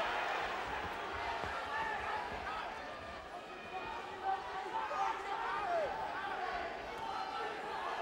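Boxing arena crowd: a steady hubbub of many voices shouting and calling out at once, with a couple of brief thumps around the middle.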